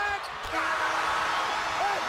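Live basketball game sound in a gym: voices calling out over the hall's echo, with one sharp ball impact about half a second in.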